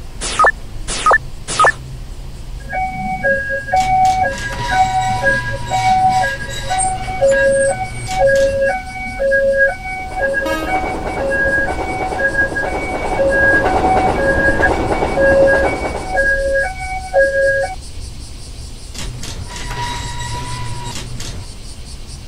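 Electronic warning alarm of an Indonesian-style railroad crossing, sounding an alternating two-note chime about once a second for some fifteen seconds and then stopping. A few sharp clicks come before it starts, and a swell of noise rises and falls in the middle.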